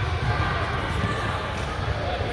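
Indistinct background chatter of spectators and players in a gymnasium, over a steady low hum of room noise.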